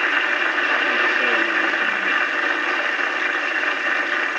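Audience applauding in a large hall, a steady wash of clapping.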